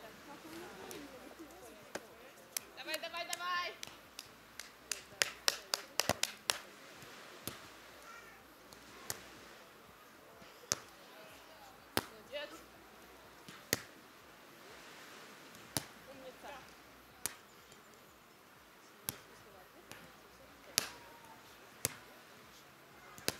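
Sharp slaps of a volleyball being struck by players' hands during a beach volleyball rally, one every second or two, with a quick run of hits about five to six seconds in. A player gives a brief call about three seconds in.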